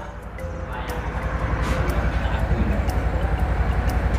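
Wind buffeting the microphone: a rushing noise with a low, pulsing rumble that grows steadily louder.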